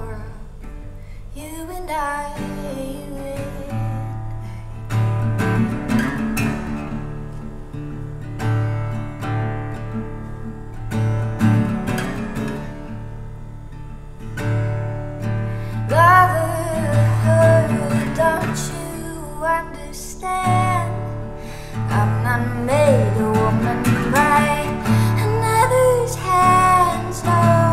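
Solo acoustic guitar playing a song, with a woman's voice singing over it, strongest in the second half.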